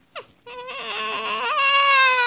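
A person's high-pitched voice gives a short falling squeak, then from about half a second in holds one long, high vocal note that wavers and rises slightly partway through.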